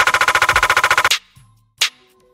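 Drill drum-kit snare samples previewed one after another: a very fast snare roll of about twenty strokes a second that stops abruptly after about a second, then a single snare hit near the end.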